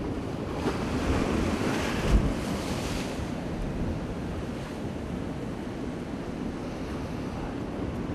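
Sea surf washing against the rocks of a cliff shore, with wind buffeting the microphone. The surf swells between about one and three seconds in, with a single low thump a little after two seconds.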